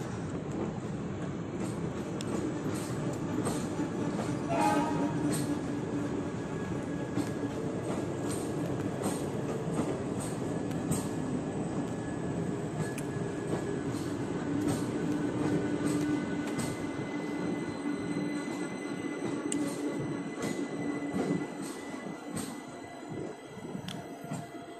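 Indian Railways passenger coaches rolling past close by. The wheels make a steady rumble on the rails, with a steady tone running through it and repeated sharp clicks as the wheels pass over rail joints. It eases off about two seconds before the end.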